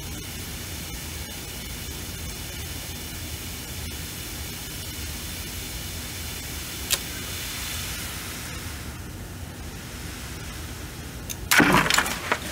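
Sand pouring steadily down a PVC pipe into a bucket that hangs from a balsa wood test bridge. About seven seconds in there is a single sharp crack, the kind of creak that signals the balsa has been damaged. Near the end the bridge fails with a burst of loud snapping as its cross bracing and left side break apart.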